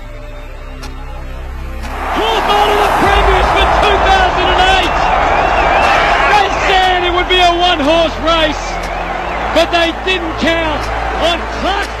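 Background music, joined about two seconds in by a loud stadium crowd cheering, with voices shouting over it.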